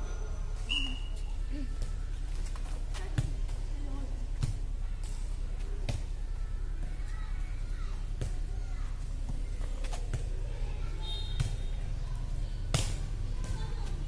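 A light inflatable air-volleyball ball being hit by players' hands and arms in a rally, about seven sharp slaps a second or two apart.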